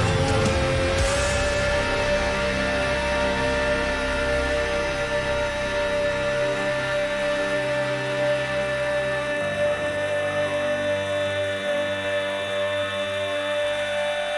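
A male singer holding one long sung note over heavy rock band backing, the final note he carries out to the end of the song. The band's low end thins out about two thirds of the way through while the note holds steady.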